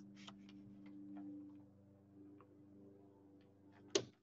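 Faint scattered ticks and scratches of a pencil sketching short strokes on paper, with a sharper click near the end, over a steady low hum.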